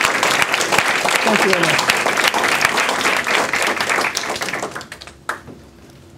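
Audience applauding, a dense patter of many hands clapping that fades out about five seconds in.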